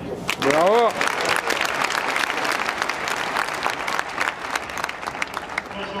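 Scattered applause from a small crowd of tennis spectators, many separate hand claps. About half a second in, a man's single shout rises in pitch.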